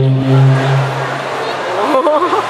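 A steady low droning note with overtones, played loud over the hall's sound system, fades out about a second and a half in. A voice follows near the end.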